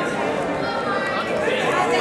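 Indistinct chatter of several voices at once, spectators and coaches talking and calling out around the wrestling mat.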